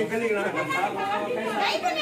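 A group of people talking: several voices in conversation, speech only.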